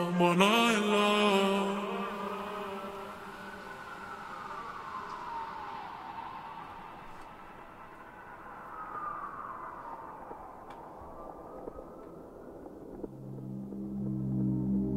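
Slow wailing siren sound effect in a song's outro, several wails overlapping as they rise and fall, after the beat drops out. A sung line opens it, and low synth notes return near the end.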